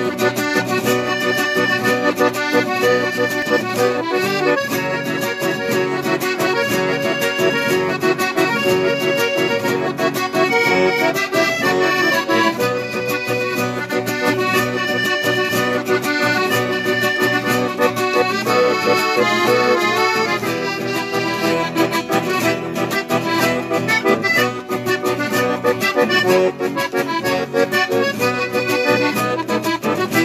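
Accordion and acoustic guitar playing an instrumental chamamé together, the accordion carrying the melody over the guitar's accompaniment, steady and continuous.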